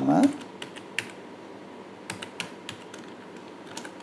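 Typing on a computer keyboard: scattered key clicks in small, irregular clusters.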